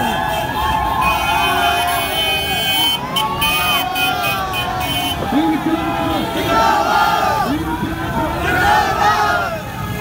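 A street crowd of many voices shouting and calling out over one another. A cluster of steady high-pitched tones sounds for about three seconds in the first half.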